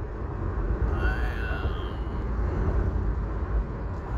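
Steady low rumble of road and engine noise heard from inside a car cruising on a freeway, with a faint brief higher tone about a second in.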